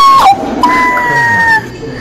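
A person's voice making high-pitched, drawn-out 'ooh'-like sounds: a short note that drops away, then a longer one held for about a second, sliding slightly down in pitch.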